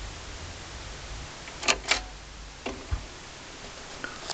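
A vinyl LP on a turntable, heard through a stereo just after the music stops: a steady low hum under a faint hiss, with a few sharp clicks from about a second and a half to three seconds in.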